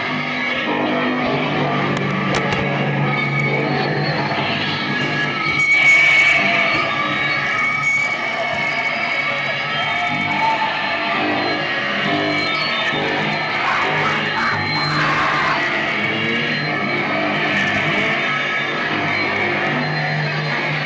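Live band playing loud, dense rock-style music with guitar, continuous throughout, in a reverberant room.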